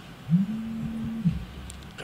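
A man's voice holds one drawn-out hesitation hum for about a second, sliding up at the start and falling away at the end. A faint click follows near the end.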